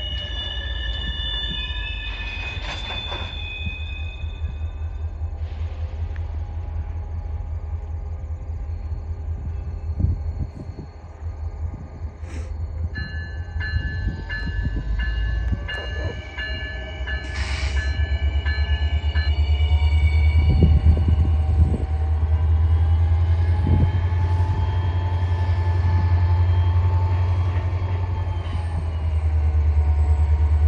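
Freight cars rolling over a railroad hump yard: a steady low rumble with high-pitched wheel squeal that comes and goes, growing somewhat louder in the second half.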